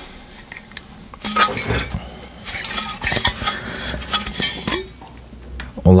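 Stainless steel water bottle being handled, with a series of irregular metallic clinks and knocks between about one and five seconds in.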